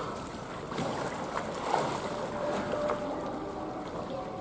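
Water splashing and lapping as bottlenose dolphins swim at the surface of a pool, with a few sharper splashes, the loudest a little under two seconds in.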